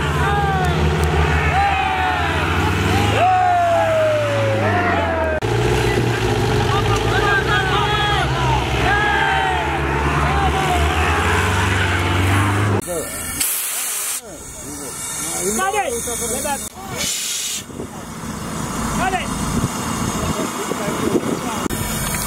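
An open-top jeep's engine runs with a steady low pulse, its note shifting about five seconds in, while men's voices call out over it. About thirteen seconds in, the engine sound cuts off abruptly, leaving a hissing outdoor noise with scattered voices.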